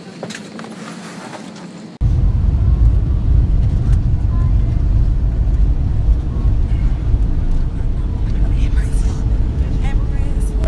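Jet airliner cabin noise heard from a window seat: quieter cabin hum at first, then, from about two seconds in, a loud, steady low rumble of the engines and airframe with a faint steady hum above it.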